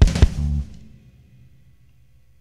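Closing hit of a zydeco song: the band strikes its final chord with drum kit and cymbal, two loud hits a quarter-second apart, then stops about half a second in and the sound rings away faintly.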